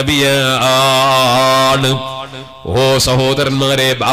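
A man's amplified voice chanting in long, drawn-out held notes through a stage microphone, breaking off briefly a little past halfway before going on. A steady low hum runs underneath.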